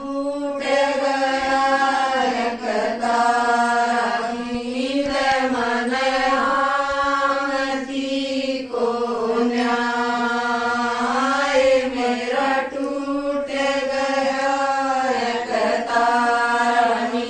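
A group of women singing a geet, a folk song, together in unison, with long held notes that bend in pitch and break off in short pauses every few seconds.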